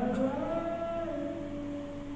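Azan, the Muslim call to prayer: a single male voice sings a long drawn-out phrase. The note wavers and glides near the start, then steps down about a second in and is held steady.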